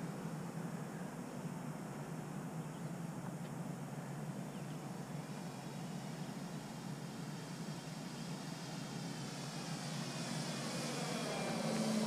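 Electric motor and 13x8 propeller of an RC Tiger Moth biplane droning in flight, on a 6-cell battery, growing louder near the end as the plane flies close past.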